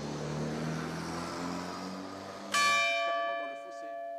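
A church bell struck once about two and a half seconds in, ringing on and slowly fading. Before it there is a low, steady hum that stops soon after the strike.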